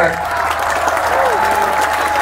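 Audience applauding, a dense, steady clatter of many hands, with a thin held note rising out of it through the second half.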